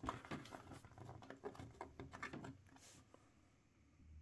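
Faint plastic clicks and taps as an action figure's feet are pressed onto the pegs of a plastic display stand, a scatter of small ticks that die away about three seconds in.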